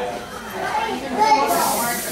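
Indistinct voices of several people talking, children among them, with a short hissing rustle near the end.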